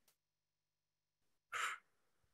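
Near silence, broken about one and a half seconds in by a woman's short, breathy sigh.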